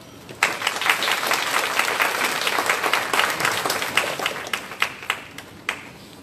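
Audience applauding. The clapping starts about half a second in, then thins to a few scattered claps near the end.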